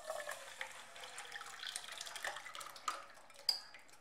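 Wet semolina-and-green-pea batter pouring from a glass bowl into a nonstick pan of warm oil, with a soft hiss that fades after about three seconds. A spoon scrapes and clinks against the bowl, with a sharp clink near the end.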